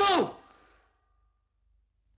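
A man's voice finishing a word, its pitch falling as it trails off into breath within the first second, then near silence.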